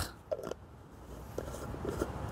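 A screw-on lid being turned onto a glass jar: a few faint, short scraping clicks against a quiet background.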